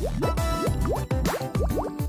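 Blue soda flowing through a drinking straw from one glass into another, heard as a quick run of short rising bubbly blips, over background music.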